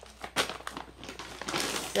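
Plastic grocery packaging crinkling and rustling as bags are handled and set down, with a sharp crackle about half a second in.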